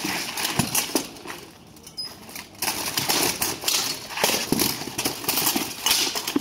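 Steel plate armour clanking and swords striking armour and shields in a sword-and-shield fight: a rapid, irregular clatter of metal hits that thins out for about a second and a half early on, then comes thick again.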